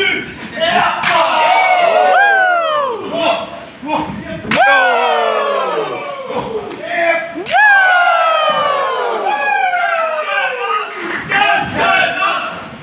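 Three sharp slaps of open-handed chops against a wrestler's bare chest, about three seconds apart, each followed by the crowd yelling a long, falling "woo".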